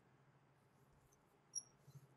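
Near silence with a faint steady low hum, then near the end a few short, high squeaks and taps of chalk drawn on a blackboard.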